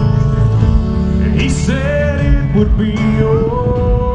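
Live country band with acoustic guitar and a male singer, played loud through an outdoor concert sound system; a sung phrase comes about a second and a half in, and a long held note near the end.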